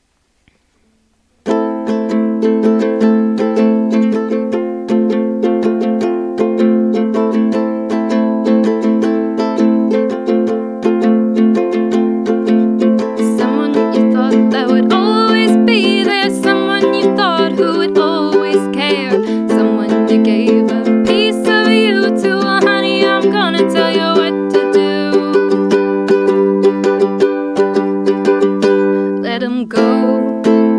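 Ukulele strummed in a steady chord pattern, starting about a second and a half in. A woman's voice sings over it from about thirteen seconds in for roughly ten seconds.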